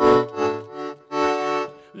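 Roland digital accordion (V-Accordion) playing two held chords, the first at once and the second about a second in, with a short gap between them.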